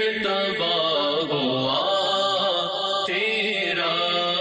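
A man singing an Urdu naat, a devotional poem in praise of the Prophet, in long, gliding melodic phrases.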